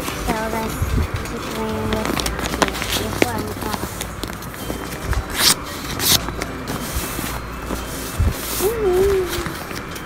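A sheet of paper being handled, with two short, sharp crackles about five and a half and six seconds in, over indistinct background voices and some held musical notes.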